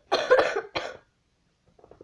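A boy coughing twice in quick succession: a loud cough lasting about half a second, then a shorter one.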